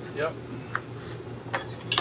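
Kitchen knife chopping on a plastic cutting board: a few light, sharp knife strikes, most of them in the second half.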